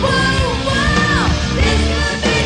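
Hard rock band playing, with a female lead singer belting held high notes that slide downward a little past a second in, over heavy bass guitar and drums.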